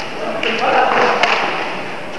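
Badminton rackets hitting a shuttlecock in a sports hall: sharp strikes, one near the start and a crisp one about a second and a quarter in, with voices in the hall between them.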